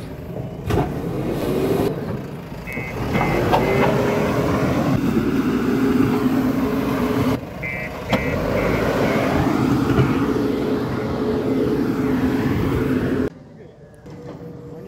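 JCB 3DX backhoe loader's diesel engine working under load as its front bucket pushes and levels loose dirt, the engine pitch rising and settling. Its reversing alarm sounds in short bursts of rapid beeps a few times. The sound drops off suddenly about a second before the end.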